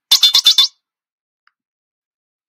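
A short sound-effect clip played by the computer when a key of an App Lab piano app is clicked: a rapid stutter of about six bursts, lasting well under a second.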